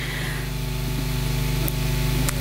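A steady low electrical hum with an even hiss, slowly growing a little louder, with a couple of faint clicks.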